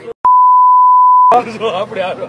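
Censor bleep: a single steady high-pitched beep lasting about a second, covering abusive words. It starts and stops abruptly, and a man's speech resumes right after it.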